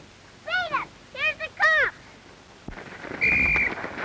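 A few meows in the first two seconds, each rising then falling in pitch. About three seconds in there is a click, then a short, steady, high whistle-like tone over a hiss.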